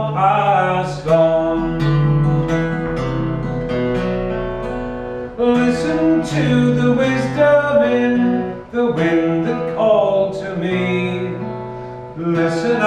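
Acoustic guitar strummed as accompaniment to a man singing a folk song, the voice rising and falling over held guitar chords.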